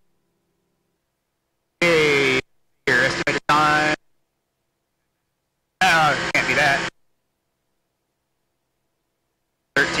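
Speech only: a few short spoken phrases with dead silence between them, and no engine or wind noise heard.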